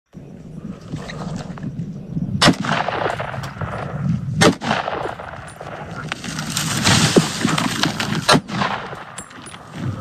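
Three shots from a hunting gun, the first two about two seconds apart and the third after a pause of nearly four seconds, over a steady rushing noise.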